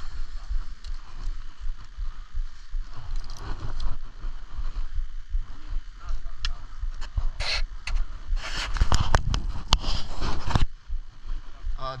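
Skis scraping and crunching on snow, over a steady low rumble of wind on a helmet-mounted camera's microphone. A louder stretch of scraping comes about two seconds before the end.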